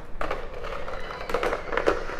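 Handling noise from scuba gear and its plastic packaging: rustling with a few light taps and knocks as the items are moved about on the floor.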